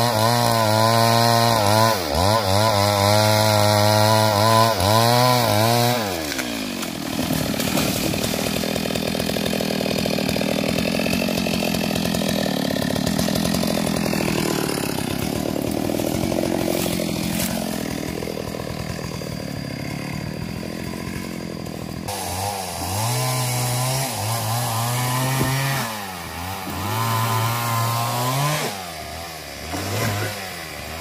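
Stihl MS 382 two-stroke chainsaw cutting at full throttle, its pitch wavering under load, then dropping to a lower, rougher idle about six seconds in. From about 22 seconds it is revved up and down in short surges.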